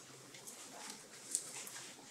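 Quiet room with faint rustling from hands, masks and paper scripts being handled, and one short sharp click a little past the middle.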